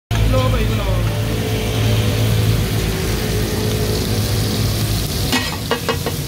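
Mutton keema sizzling in oil on a large iron tawa griddle, over a steady low hum. Near the end, metal spatulas start striking the griddle in quick clanks: the chopping that gives takatak its name.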